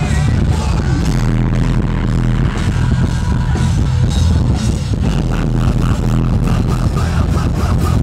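Live rock band with electric guitars, bass and drums playing loud in an arena.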